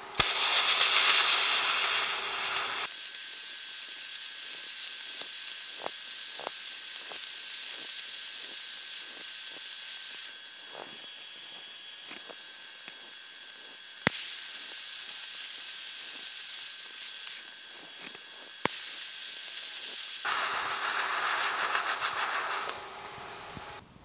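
TIG welding arc hissing steadily as filler rod is fed into a steel sheet-metal patch. The arc is struck with a sharp click at the start, again about two-thirds of the way through and once more a few seconds later, with quieter gaps between the welds.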